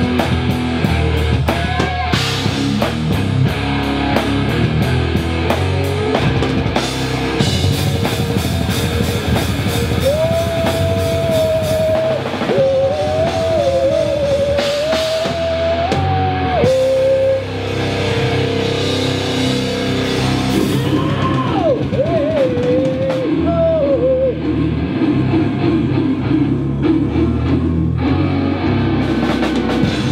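A heavy metal band playing live on an amplified stage: distorted electric guitars, bass and a drum kit. A single wavering lead melody rises above the band in the middle of the passage and again a little later.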